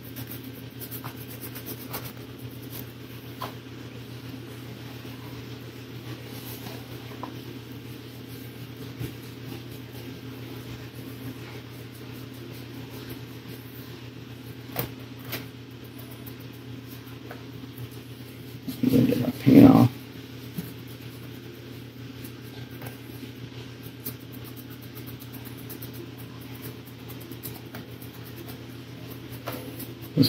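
Faint scratching and ticking of a stiff flat brush dry-brushing paint onto a sculpted resin rock base, over a steady low hum in a small room. About two-thirds of the way in, a brief burst of a man's voice.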